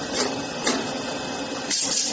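Cold-forge lead bush machine running: a steady mechanical clatter with about three sharp knocks from the forming die.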